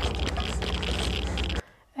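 Television drama soundtrack: a Geiger counter crackling with rapid, dense clicks over muffled panting through a respirator and a low pulsing rumble. It cuts off abruptly near the end as playback is paused.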